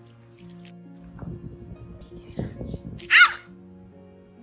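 A bulldog gives one short, loud, high yelp-like bark about three seconds in, after a couple of seconds of low rough noises. Background music plays throughout.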